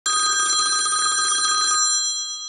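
Old-style telephone bell ringing: a rapid trill of clapper strikes that starts abruptly and cuts off near the end, the bells ringing on for a moment.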